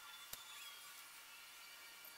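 Near silence: faint room hiss, with one soft click about a third of a second in.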